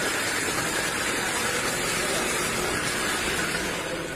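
Student-built conveyor belt running on its geared electric drive motor, a steady mechanical hiss and hum.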